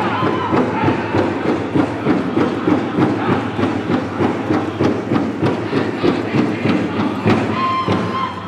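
Powwow drum group: a large shared drum beaten in a steady fast beat, about two beats a second, with the singers' voices over it, accompanying a Women's Fancy Shawl dance.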